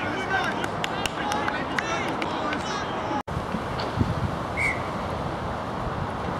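Rugby players shouting and calling to each other during play. About three seconds in the sound drops out for an instant and gives way to wind rumbling on the microphone.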